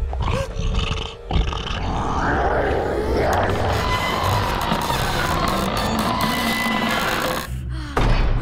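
A cartoon monster-like roar, starting suddenly about a second in and lasting about six seconds, over dramatic music.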